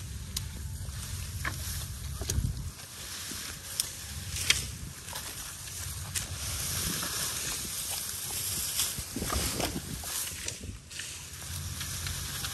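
Dry bamboo stalks and branches rustling, scraping and snapping as they are pulled off a brush pile, with sharp cracks about four and four and a half seconds in. A low rumble runs under the first few seconds and then stops.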